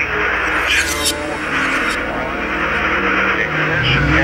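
Sampled rocket launch roar, a loud rushing noise over a low synth drone, following a launch-control countdown. The electronic dance beat comes in right at the end.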